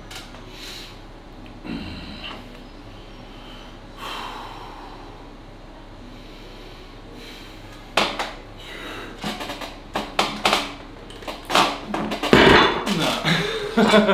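Cable back-pressure machine loaded with 75 kg weight plates: a quiet stretch while the lift is set up and pulled, then from about eight seconds in a run of sharp metal clanks and knocks from the plates and handle. The heaviest thud comes about twelve seconds in as the weight comes down, with a man's voice among the knocks near the end.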